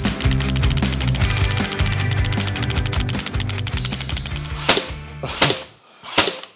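Rock music with a fast, heavy beat, fading out about four and a half seconds in. Then two sharp shots from a Ryobi HP 18V cordless brad nailer driving nails in bump mode, under a second apart.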